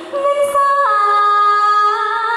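A woman singing a Thai song, holding a long note that steps down in pitch a little under a second in and is then sustained.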